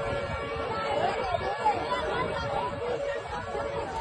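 Street crowd chatter: many people talking over one another at once, a steady babble with no single voice standing out.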